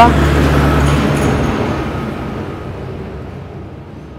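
Water poured from a steel cup into the clear plastic bowl of a tractor's diesel water separator, a splashing pour that fades steadily. A low engine-like hum runs underneath and stops about a second in.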